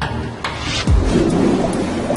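Deep thunder-like rumbling under a steady rain-like hiss, with a low boom about a second in.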